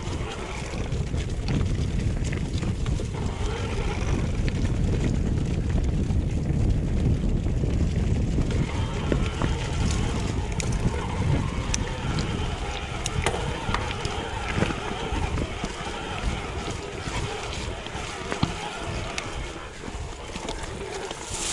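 Mountain bike descending a dirt forest trail: wind rushing over the camera microphone, with tyre noise on dirt and stones and scattered clicks and rattles from the bike over bumps.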